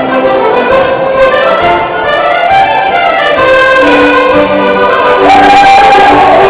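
Live Occitan folk band playing a sbrando, a traditional Occitan circle-dance tune, as a running melody of held notes. About five seconds in, a long steady higher note comes in.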